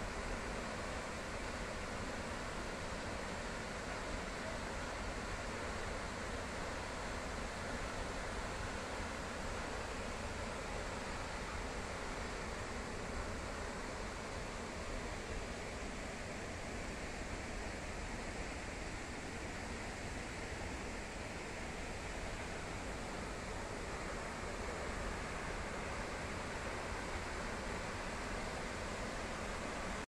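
Steady, unbroken rush of a large waterfall, the Akumersu Falls, dropping a heavy volume of water.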